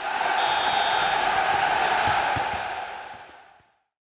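A crowd cheering, steady for about three seconds and then fading out.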